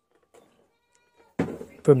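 Near silence with one faint click, then a man's voice begins speaking near the end.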